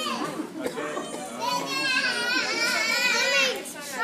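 Children's high-pitched voices talking and calling out, with one long, wavering high voice from about a second and a half in until near the end.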